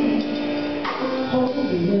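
Gospel music: instrumental accompaniment with held notes and a woman's voice, her pitch gliding down near the end.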